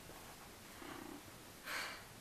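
A quiet pause: a faint, short low hum about a second in, then a breath drawn in near the end.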